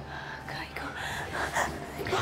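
A person whispering, breathy and hushed.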